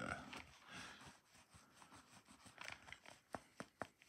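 Faint handling sounds of a leather Filofax binder being flexed in the hands: soft rustling, then a few light clicks in the second half.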